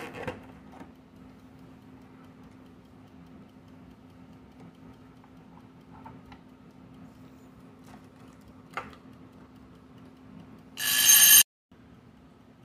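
Quiet room with a steady low hum and a few faint clicks as a tiny plastic toy jar is handled on a wooden table. Near the end, a loud electronic ringing tone sounds for about half a second and cuts off suddenly.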